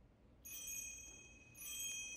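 Small metal chime bells struck twice, about a second apart. Each strike rings with several bright high tones that linger and fade.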